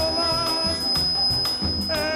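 Live band music with a voice singing held notes over it. A thin, steady high-pitched tone runs through it and stops just after the end.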